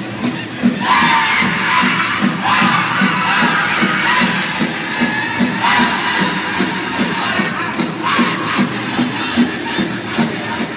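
Powwow drum group playing a Grand Entry song: a steady big-drum beat of about three strokes a second under high-pitched group singing, with new vocal phrases starting about a second in and again a few times after.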